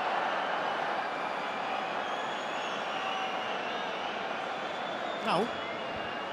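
Football stadium crowd noise, a steady wash of many voices that slowly eases, with a single spoken word near the end.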